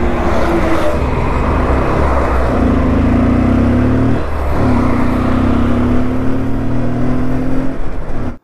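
Bajaj CT 125X's single-cylinder 125 cc engine pulling as the motorcycle rides along a highway, under a steady rush of wind on the microphone. The engine note rises, breaks off briefly a little past four seconds in, the way it does at a gear change, and then rises again.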